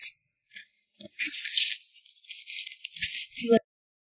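Cold noodles in red chili oil being slurped and chewed close to the microphone: two wet, crackly stretches of sucking noise with a few soft mouth clicks, cutting off suddenly near the end.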